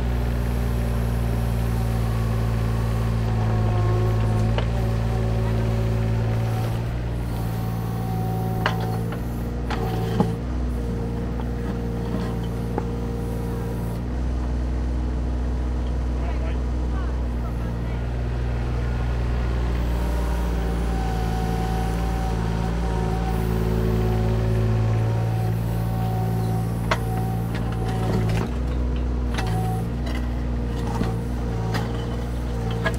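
Mini excavator's diesel engine running steadily, its note swelling and easing as the hydraulics work the arm and bucket, with a few sharp knocks.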